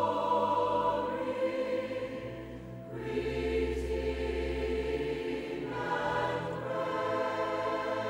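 Choral music: a choir singing long held chords that shift twice, with a deep bass note sounding under the middle of the passage.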